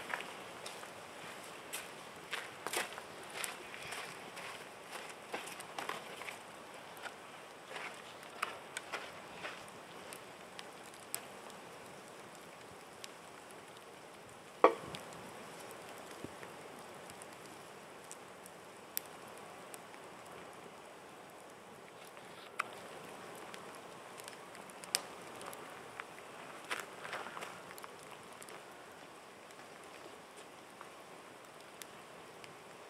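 Wood campfire crackling quietly, with scattered sharp pops and one louder pop about halfway through.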